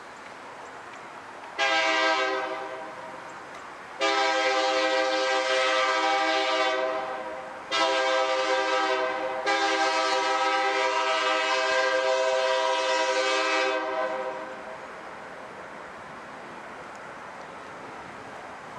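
Air horn of a Kansas City Southern SD70MAC diesel locomotive, sounded in four blasts: a short first one about 1.5 s in, two longer ones close together, then a long final blast that ends about 14 s in. The approaching train can be heard faintly under the horn.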